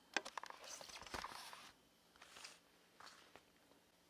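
Faint clicking of small metal parts being handled: a metal hex wheel adapter being fitted onto the drive pin and axle stub of a 1/12-scale RC truck axle. A quick run of clicks comes in the first second, then only soft rustles.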